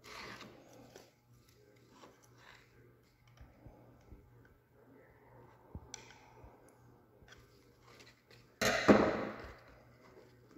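Hands working a plastic fuel-pump canister cap, its rubber grommet and fuel line, making small scattered handling clicks and rustles. A louder scraping sound of about a second starts abruptly near the end and fades out.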